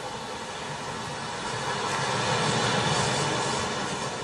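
A broad rushing noise, like a plane passing overhead, that swells up about halfway through and eases off near the end.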